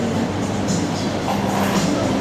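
Steady hubbub of a busy indoor market hall: many voices blending into a constant din with no single sound standing out.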